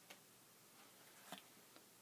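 Near silence with three faint, short clicks at irregular intervals from trading cards being handled and shuffled.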